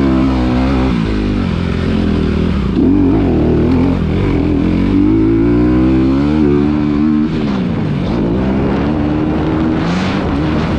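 Motocross bike engine being ridden hard, its pitch repeatedly climbing under throttle and dropping as the rider shuts off, with a longer drop about seven seconds in before it revs back up.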